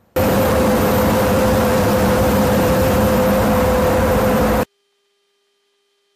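Loud, steady rushing roar of jet engines and airflow heard from inside a KC-135 Stratotanker in flight, with a steady hum through it. It starts suddenly and cuts off abruptly after about four and a half seconds.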